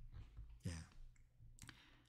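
Near silence, with a quiet spoken 'yes' (예) a little over half a second in and a couple of faint clicks near the end.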